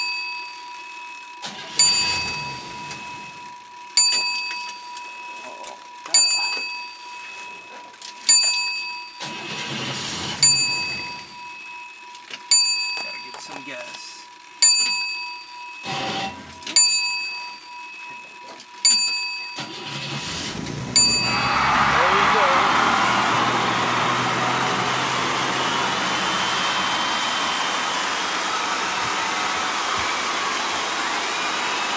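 A bell-like ding repeats about every two seconds, ten times, over a steady high tone, with a few short noisy bursts in between. About twenty seconds in, the 1954 Chevrolet 210's inline-six catches and keeps running steadily, on its first start after a carburetor rebuild.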